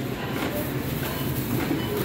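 Steady low hum and rumble of supermarket checkout ambience, with faint indistinct voices in the background.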